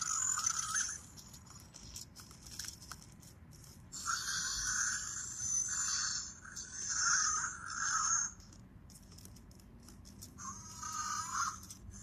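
An Untamed Fingerlings electronic dinosaur toy making scratchy electronic creature sounds through its small speaker as a hand touches it. The sounds come in three bursts: about a second at the start, a longer run of several calls from about four to eight seconds in, and a short one near the end.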